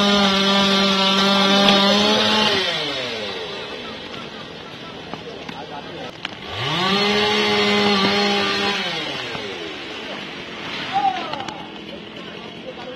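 Chainsaw revved to full speed twice, each time held steady for about two seconds and then winding back down; the first rev is already at speed as the sound begins, and the second climbs up about halfway through.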